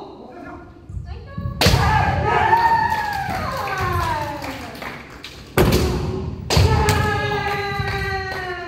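Kendo players' long kiai shouts, each held for a couple of seconds and slowly falling in pitch, set off by sharp cracks of bamboo shinai strikes and stamping feet on the wooden dojo floor, about a second and a half in and twice more past the middle.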